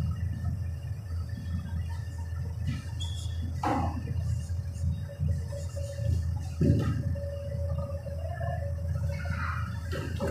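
Marker writing on a whiteboard: short intermittent strokes with brief squeaks, over a steady low room hum.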